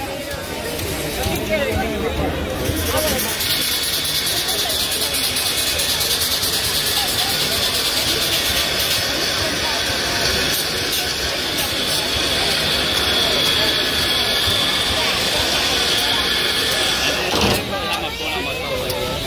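Union Pacific Big Boy 4014, a 4-8-8-4 articulated steam locomotive standing still, venting steam with a steady high hiss that sets in a few seconds in and runs until just before the end, over crowd chatter.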